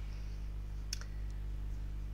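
A single sharp click about a second in, followed by two or three much fainter ticks, over a steady low hum.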